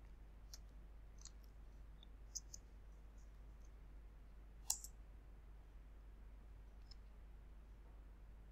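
Faint computer keyboard keystrokes: a few scattered key clicks, with one louder click a little past the middle, over near silence.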